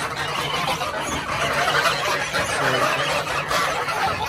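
A flock of young geese calling all at once, a dense continuous chatter of many overlapping calls, as they crowd the pen eager to be let out.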